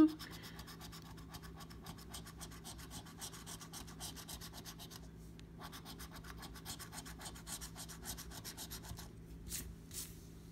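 A coin scratching the coating off a scratch-off lottery ticket in rapid back-and-forth strokes, pausing briefly about halfway and stopping about a second before the end.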